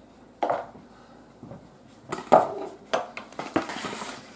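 Metal pie server and forks clinking and knocking against ceramic plates while pie is served: a few separate sharp clinks, the loudest a little past halfway through.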